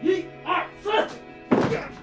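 Background music under four short bursts of grunting and thuds from two actors grappling in a staged fight, about half a second apart, the last one near the end the loudest.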